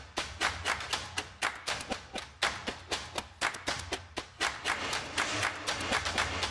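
Background music with quick, sharp percussive hits, about four or five a second, over a steady low bass.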